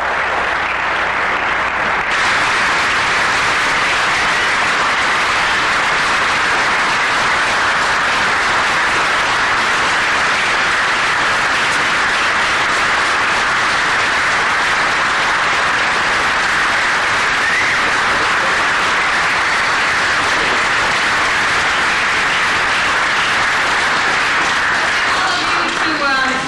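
Audience applauding at length after a lecture: a steady, dense round of clapping that holds at the same level throughout and fades near the end.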